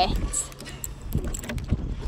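Wind buffeting a phone microphone, a low rumble, with a laugh right at the start.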